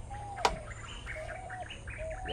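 Birds calling in the background: short whistled notes and brief chirps, with one sharp knock about half a second in.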